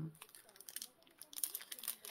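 Paper rustling and crinkling as a folded decorated paper piece is handled and opened by hand, faint at first, then a run of short crackles in the second half.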